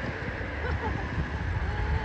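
A steady low outdoor rumble, from wind on the microphone or nearby road traffic, with faint voices in the background.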